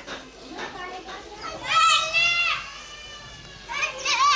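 Children's voices calling out: a loud, high-pitched drawn-out shout about two seconds in and another just before the end, over fainter chatter.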